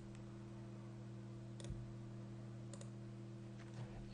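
A few faint computer mouse clicks, about a second apart, the last two close together, over a steady low hum.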